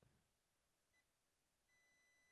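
Near silence, with a very faint high beep from a digital multimeter's continuity buzzer: a short blip about halfway, then a steady tone starting near the end. The near-zero reading marks a shorted rail on the graphics card.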